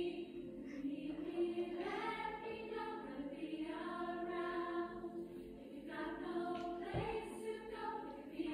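A choir singing sustained phrases, heard through a television's speakers.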